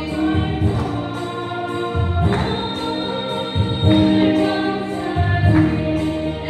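A women's choir singing a gospel hymn together in long held notes, with a low instrumental backing beneath the voices.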